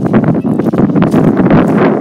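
Loud wind buffeting the phone's microphone, mixed with the rustle and thud of boots striding through long grass.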